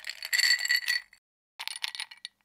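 Ice rattling and clinking in a metal cocktail shaker, shaken in two bursts: a longer one of about a second, then a shorter one near the end, with a bright metallic ring.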